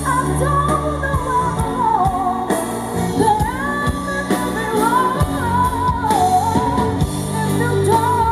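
A woman singing a pop song live into a microphone, with a band (drums and bass) playing behind her.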